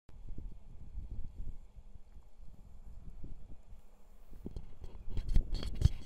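Wind buffeting a handheld camera's microphone as an uneven low rumble, with knocks and rubbing from hands handling the camera over the last second or so.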